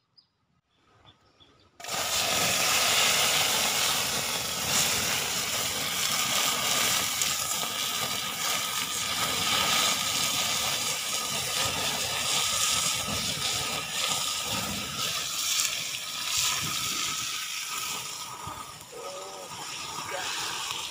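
Coconut worms frying in hot oil in a pan over an open wood fire, a loud steady sizzle with flames flaring off the pan. It starts suddenly about two seconds in, after a near-silent moment with a few faint high chirps.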